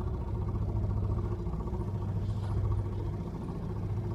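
Outboard motor running steadily at low speed on an inflatable raft, still warming up. The hull is moving in displacement mode, not yet planing.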